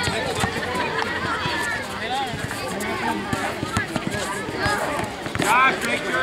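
Voices of players and onlookers calling out across an outdoor basketball court, overlapping with scattered knocks from the ball bouncing and feet on the court surface. The voices grow louder about five and a half seconds in.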